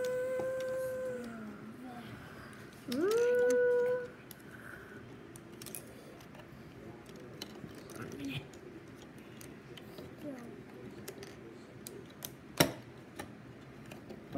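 A child's voice giving two long held 'ahh' cries, each rising into a steady pitch, the first ending about a second in and the second lasting about a second from three seconds in. Then plastic LEGO pieces clicking and knocking as they are handled, with one sharp click near the end.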